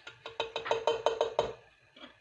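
A quick, evenly spaced run of about ten sharp clicks, roughly seven a second, with a steady ringing tone under them; it stops about a second and a half in.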